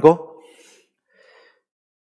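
A man's voice ends a word, followed by a faint breath.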